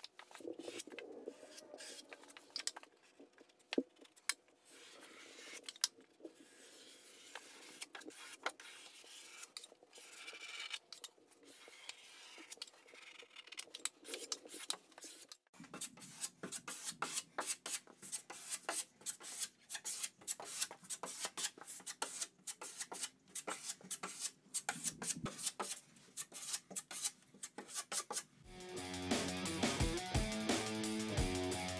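Drywall taping knife scraping and smoothing joint compound on drywall, in many short strokes, with the blade now and then scraping against the mud pan. Music comes in near the end.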